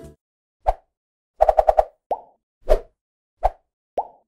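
Cartoon-style pop sound effects for an animated logo: a single pop, then a quick run of five, then four more single pops spaced about half a second to a second apart.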